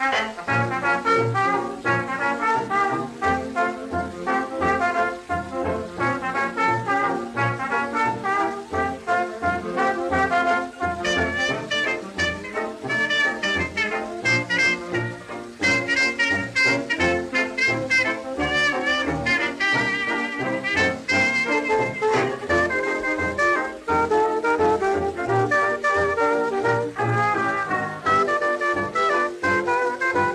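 A 1920s dance band playing an instrumental fox trot chorus, brass to the fore over a steady bass beat, from a 78 rpm record.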